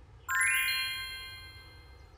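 Cartoon chime sound effect: a quick rising run of bright, bell-like notes about a quarter second in, which keep ringing and fade away over the next second and a half.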